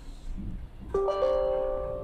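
Windows 10 User Account Control chime from a laptop's speakers as the administrator-permission prompt appears: a short bell-like chord about a second in, its notes entering in quick succession and fading over about a second.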